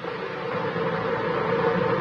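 Steady hiss of an open radio channel on an old cassette recording, with a faint steady hum under it, between spoken transmissions.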